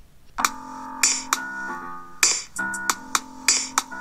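A beat loop playing back from the Koala Sampler phone app: held keyboard chords that change every second or so, with drum hits on top, starting about half a second in.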